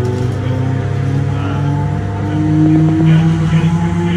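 Class 317 electric multiple unit on the move, heard from inside the passenger saloon: a steady low hum under a traction motor and gear whine whose pitch shifts, rising and getting louder in the second half.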